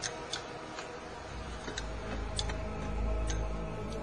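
Sharp, irregular clicks and knocks as a four-legged robot's feet step on and shift loose cinderblocks, about six in four seconds, over a steady low machine hum that grows louder in the second half.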